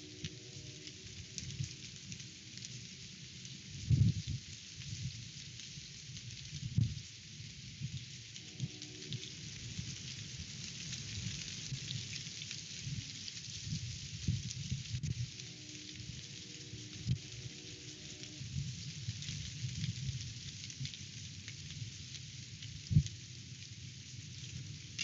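Strong wind gusting on an outdoor microphone in a tree, a steady rushing hiss over a low rumble. Heavy buffets on the microphone make low thumps about four seconds in, about seven seconds in and near the end.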